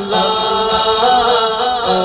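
Male voices chanting an Urdu naat without instruments: a lead voice sings a winding, ornamented melody over a low note held underneath, which breaks off and comes back in near the end.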